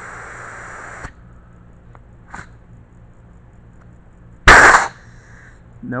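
Compressed air hissing from a handheld blow gun held to the de-duster push-in fitting of a CNC ATC spindle for about a second, then a faint short puff, and a much louder, sharp blast of air about four and a half seconds in.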